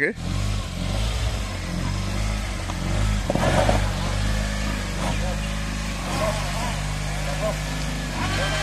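Small loaded pickup truck's engine running at steady revs as the truck works through mud and rubble, with brief voices over it.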